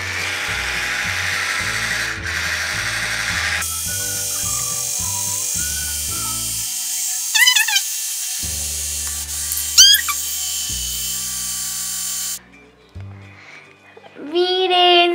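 A battery-powered toy blender runs with a steady whirr while mixing milk and cocoa. About four seconds in it gets louder and higher, and it cuts off near the end. Background music with a bass line plays underneath, with two short rising whistle-like tones.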